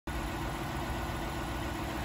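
Jeep Grand Cherokee's 5.7-litre Hemi V8 idling steadily, an even low hum.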